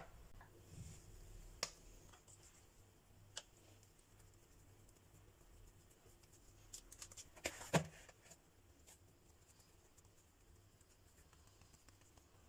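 Faint kitchen handling noise: a few soft taps and clicks as hands pinch off and shape bread dough in a plastic bowl, with a short cluster of slightly louder clicks about eight seconds in.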